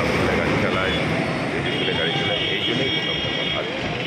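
Steady street traffic noise with indistinct voices in the background.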